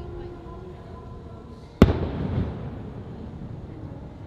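An aerial firework shell bursting with a single sharp bang a little under two seconds in, followed by a low rumble that fades over about a second.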